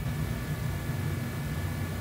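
Steady low hum with hiss and a faint high-pitched whine, unchanging throughout, with no distinct events.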